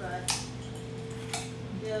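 Two short, sharp clicks about a second apart, over a steady electrical hum.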